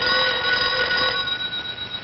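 A telephone bell ringing. The ring stops just after a second in and its tone dies away.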